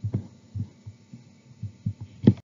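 A series of soft, low thumps, about three a second and irregular in spacing.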